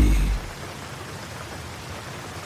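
Steady rain falling, with a low rumble of thunder dying away in the first half second.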